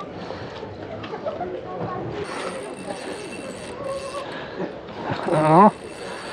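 Low outdoor background murmur with a faint steady high-pitched whine, broken about five seconds in by a short drawn-out vocal exclamation.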